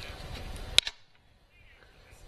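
A single sharp click from a plastic marker pen being put away, over faint room noise.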